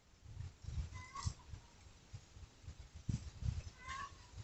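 Faint low rumbles and bumps, with a short high chirping animal call about a second in and another near the end.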